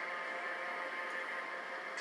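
Quiet, steady background of a film soundtrack playing from a television's speakers and picked up by a phone, with a faint hiss and no dialogue.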